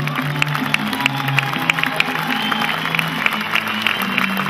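Slovak folk string band of fiddles and double bass playing on with steady low held notes, with scattered audience clapping over it.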